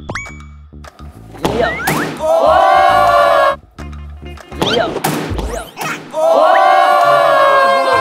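Soccer balls kicked across a gym floor, a few dull thuds, under background music, with two long drawn-out group cries held for a second or two each.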